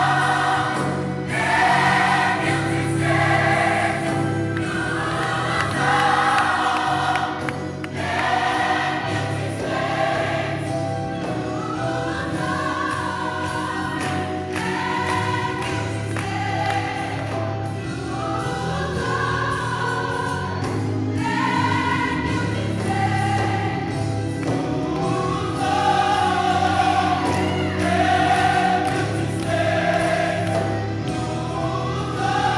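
Gospel choir singing in phrases over a steady bass accompaniment.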